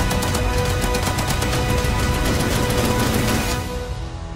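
Rapid heavy machine-gun fire over dramatic trailer music. The burst of shots stops about three and a half seconds in, leaving the music.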